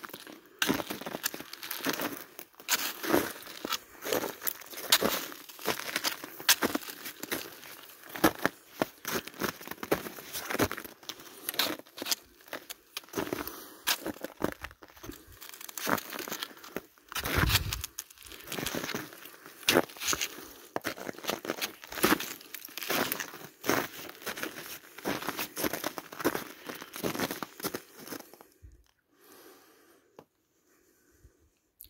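Footsteps crunching through snow at a walking pace, one or two steps a second, stopping shortly before the end. A low thump comes about halfway through.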